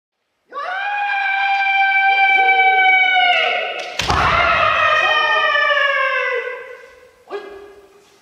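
Kendo kiai: a long, sustained shout held for over three seconds. About halfway through comes a sharp crack as a bamboo shinai strikes the kote (wrist guard), together with a stamp on the wooden floor. A second long shout then falls away, and a short shout comes near the end.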